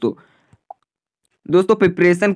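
A man narrating in Hindi breaks off, pauses for about a second and a half, then starts speaking again. A single faint short blip sounds during the pause.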